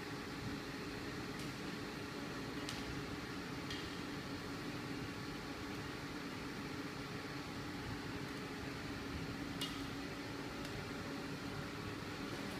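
Steady machine hum from a conveyor-fed laser marking machine running, with a few faint, light ticks now and then.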